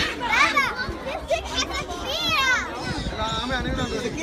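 Young children's high-pitched excited voices and squeals, in two bursts, over the background chatter of a crowd.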